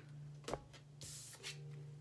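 An oracle card being drawn from the deck: a light tap, then a short papery slide about a second in, over a faint steady low hum.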